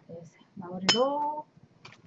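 A short wordless vocal sound from a woman, with a single sharp clink about a second in that rings briefly.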